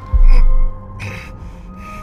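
Sharp gasps of breath, repeated, over a film score of held electronic tones. A very loud deep bass boom hits just after the start.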